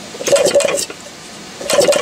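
Flywheel of a Maytag Model 92 single-cylinder engine rolled quickly by hand, twice, each spin a short clattering, clicking burst about half a second long. The engine is being turned over to check the coil and points for spark at the plug.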